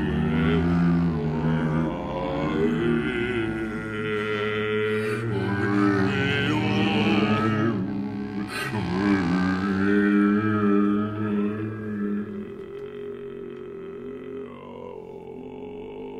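Contemporary chamber music: flute playing sustained, slowly wavering tones over a low drone. It thins out and grows quieter over the last few seconds.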